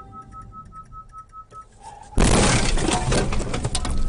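Quiet background music, then just over two seconds in a car collision: a sudden loud crash of impact followed by about two seconds of crunching, cracking and rattling debris. The sound then cuts off abruptly.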